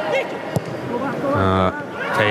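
A man's voice speaking in short bits over the steady noise of a stadium crowd, typical of a live football broadcast commentary.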